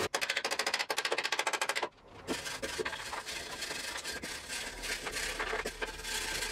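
A fast, even run of clicks, about ten a second, for about two seconds. Then, after a short pause, hand rubbing and scraping on a segmented wooden ring, with small scattered clicks.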